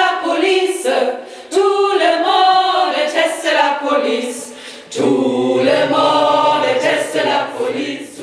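A group of women singing together in phrases, with short breaks between lines. A lower, steady tone joins about five seconds in.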